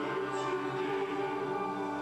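Choir singing slow, sustained chords.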